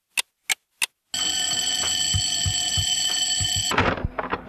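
A clock ticking about three times a second, then just after a second in an alarm clock bell ringing loud and steady, cutting off suddenly near the end; a sound effect dropped into a hip hop track.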